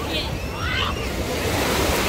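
Wind rumbling on the microphone over the gentle lapping of small waves in shallow water, with faint distant voices of people in the water in the first second.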